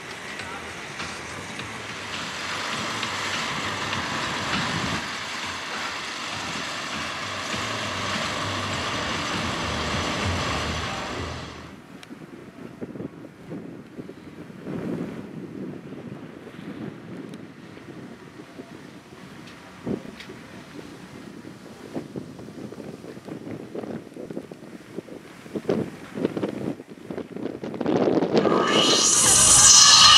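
Wind rushing on the microphone for about twelve seconds, cutting off suddenly to quieter outdoor ambience with scattered knocks. Electronic dance music with a heavy beat comes in loudly near the end.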